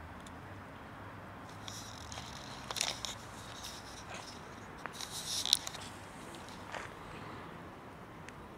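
Cats crunching dry kibble, with two short bursts of crunching about three seconds and five seconds in.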